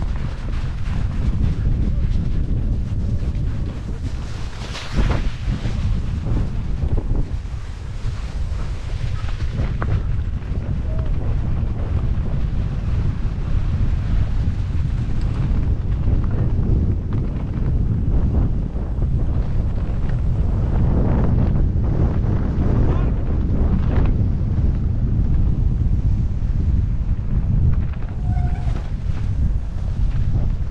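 Wind buffeting a GoPro MAX camera's microphone as a mountain bike descends at speed, a steady loud rumble mixed with tyre noise over grass and snow. A few sharp knocks from bumps in the track, one about five seconds in and another near ten seconds.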